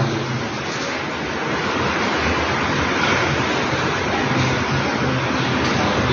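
A steady, loud rushing hiss with no speech, like static noise on an open sound-system or microphone channel.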